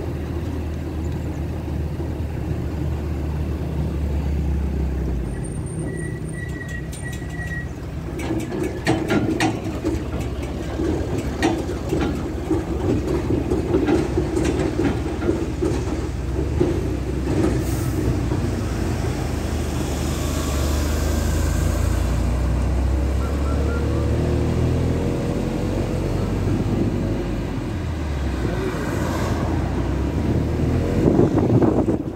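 Running noise of a moving road vehicle heard from on board: a steady low engine and tyre rumble, with a few seconds of rattling knocks about a third of the way in.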